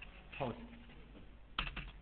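Typing on a computer keyboard: a few light keystrokes, then a sharper cluster of key presses about one and a half seconds in.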